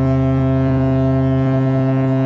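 A ship's horn sounding a long, steady, low blast.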